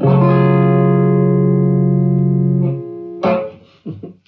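Electric guitar (a Telecaster-style solid-body) ending a slow blues: one chord rings out for nearly three seconds and is then damped, followed by two short final strums.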